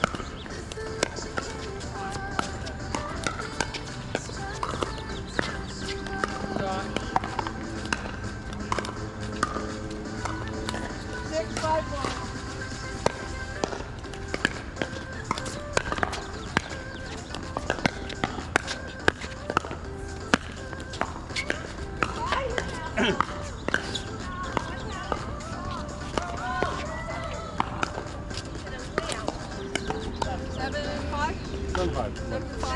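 Pickleball rallies: repeated sharp pops of paddles striking a plastic ball, coming in irregular runs through the stretch. Underneath runs background music and voices.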